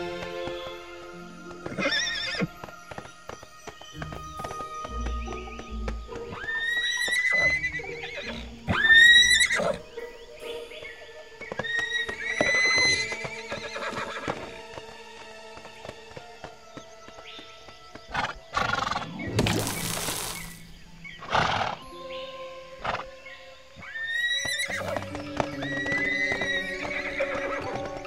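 Animated unicorns whinnying and neighing several times, each call rising in pitch, over soft background music. A brief rush of noise cuts across about two-thirds of the way through.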